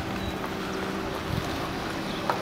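Steady wind noise buffeting the microphone outdoors, an even rush with no distinct events.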